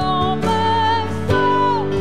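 Live worship band: a woman sings long held notes over acoustic guitar and keyboard. The melody steps to a new note about half a second in and again past a second, and the last note falls away near the end.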